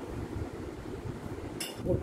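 Steady low background hum, then a single light clink of a small glass bowl about a second and a half in as it is handled over the mixing bowl.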